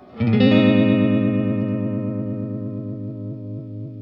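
Electric guitar chord played through a Black Cat Vibe, an analog Uni-Vibe-style modulation pedal, struck just after a brief gap and left to ring out. It fades slowly with a regular throbbing wobble about three times a second.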